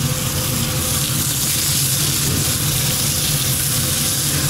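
Chicken fillets sizzling in a hot ribbed grill pan, a steady hiss over a constant low machinery hum.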